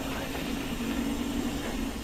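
Mountain bike rolling down a dirt singletrack: a steady rush of tyre noise and wind on the helmet camera's microphone.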